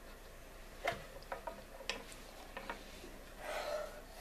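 Crayon tapping on paper on a tabletop as a child draws a pig's eyes: a handful of light, separate taps. Near the end, a short rustle as the paper shape slides across the table.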